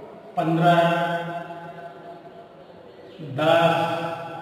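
A man's voice making two long, drawn-out utterances at a steady pitch, each about a second long, one shortly after the start and one near the end, with a quieter pause between them.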